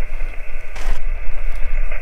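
A steady low rumble with a short rustle about a second in.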